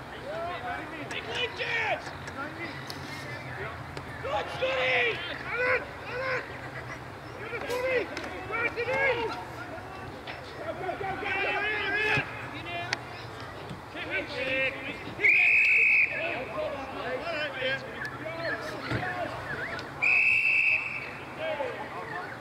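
Players and spectators shouting and calling across an Australian rules football ground, with two short blasts of an umpire's whistle about five seconds apart in the second half.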